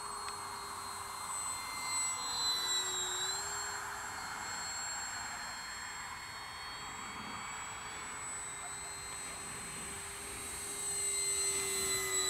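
Electric motor and propeller of an 800mm foam RC Hawker Tempest in flight, a steady high whine. The pitch dips slightly about three seconds in, and the sound grows louder near the end as the plane comes closer.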